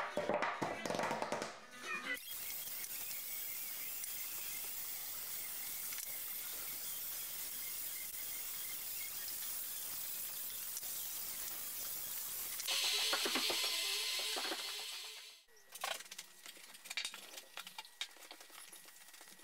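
Handheld heat gun blowing a steady hiss of hot air over the wooden stool, louder for its last two or three seconds before it cuts off. It is preceded by a few knocks of the wooden parts being handled, and followed by a cloth rubbing on the wood.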